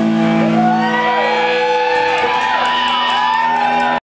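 Pop-punk band playing live at full volume: a held electric-guitar chord, with a run of rising-and-falling wailing tones over it from about half a second in.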